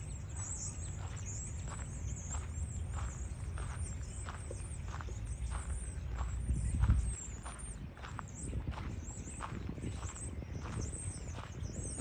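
Footsteps of someone walking at a steady pace on a paved path, about two steps a second, over a low rumble that swells briefly about seven seconds in.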